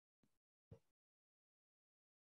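Near silence on a video-call line, broken by two brief faint blips in the first second.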